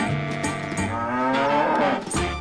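A cow moos: one long call that rises in pitch through the second half, over background music with a low bass line.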